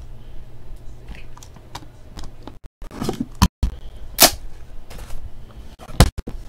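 Handling noise from a cardboard and wooden trading-card box being opened: scattered clicks, taps and knocks, the loudest a sharp knock about four seconds in. The sound cuts out briefly twice.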